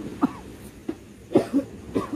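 A man coughing in several short, harsh bursts.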